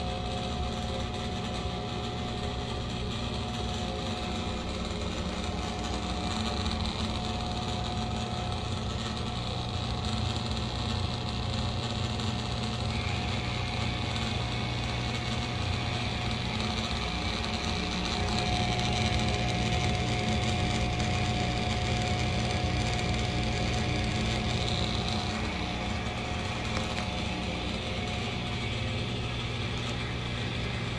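Old Broan ceiling bathroom exhaust fan running loudly and steadily: a low motor hum with a thin steady whine above it over the rush of air.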